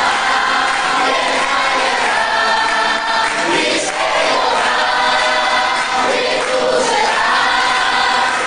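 A congregation singing a praise song together, many voices on long held notes.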